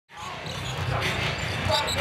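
Basketball arena game sound: steady crowd murmur with a ball being dribbled on the hardwood court, fading in at the very start.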